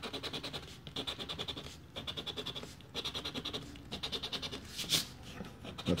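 A coin scraping the scratch-off coating on a paper lottery ticket in several runs of rapid back-and-forth strokes, with short pauses between the runs.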